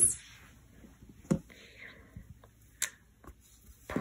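Mostly quiet room, with two brief sharp clicks about a second and a half apart and soft rustling between them, like small handling sounds.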